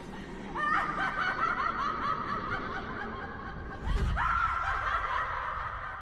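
A woman's high-pitched, wild laughter in two long bouts, the second starting about four seconds in, just after a low thud.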